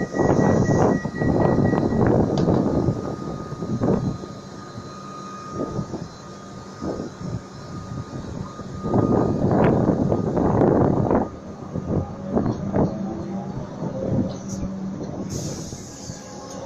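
Comeng electric suburban train pulling away, its motors and wheels running as the carriages move off, under a thin steady tone. It is louder in the first few seconds and again about two-thirds of the way through.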